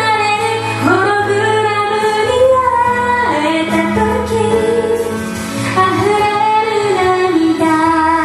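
Woman singing a Japanese song in held, gliding notes while accompanying herself on an electric keyboard.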